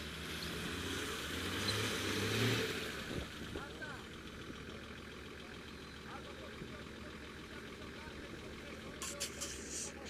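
An off-road vehicle's engine revs up over the first few seconds, then settles to a lower, steady running. Voices can be heard, and there are a few sharp clicks near the end.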